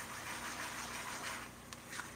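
Sliced fennel and onion sizzling gently in oil in a frying pan as they are stirred with a spatula: a soft, even hiss.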